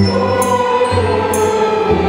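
Youth string orchestra of violins and lower strings playing held, slow-moving chords, with a short jingling percussion stroke about once a second.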